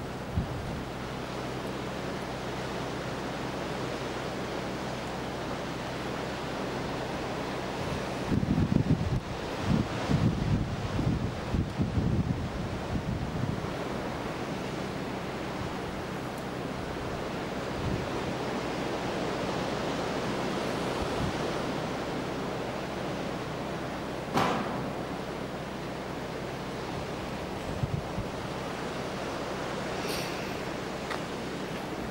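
Sea surf washing steadily against the shore, with a faint low steady hum underneath. Wind buffets the microphone for a few seconds about a third of the way in, and there is one sharp click near the end.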